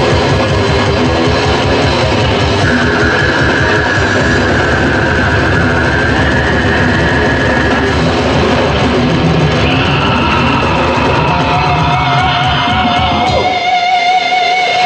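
Old-school death metal played live by a full band: distorted guitars, bass and dense drumming, with a long held high guitar note in the middle. Near the end the drums stop, leaving held, wavering guitar notes ringing.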